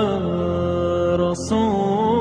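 A solo voice chanting a slow, drawn-out wavering line, likely an Islamic nasheed. The notes are held and slide between pitches with vibrato, with a short hissing consonant or breath about one and a half seconds in.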